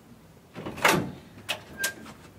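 A hotel room door being unlocked and opened: a loud clunk of the handle and lock about a second in, then two sharp clicks near the end as the door swings open.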